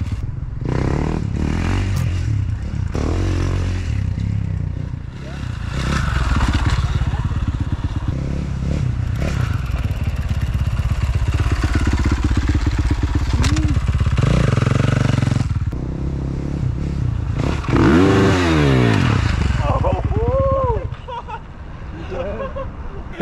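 Dirt bike engine running and revving as it is ridden, its pitch rising and falling with the throttle. Near the end the pitch sweeps sharply down and back up.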